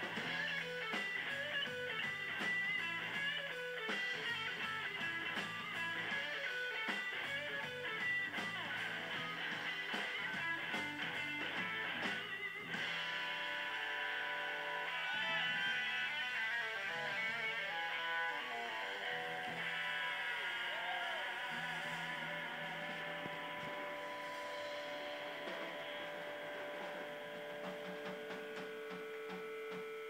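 A live blues band, with a Stratocaster-style electric guitar playing lead over drums. The guitar bends notes, pitch sliding up and down around the middle.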